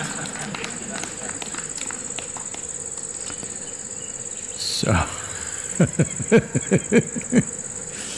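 Steady high-pitched chirring of night insects, with a man laughing about five seconds in: a falling vocal note, then a run of about seven short bursts.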